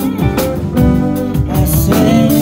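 Live band playing: a drum kit keeping a steady beat under electric guitars and keyboard, with a woman singing into a microphone.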